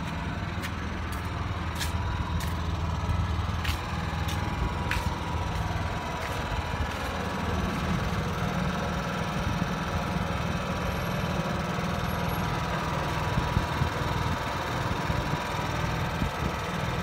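Honda portable generator engine running steadily with a low hum, powering a mobile grooming van through a cable. A few sharp clicks sound in the first five seconds.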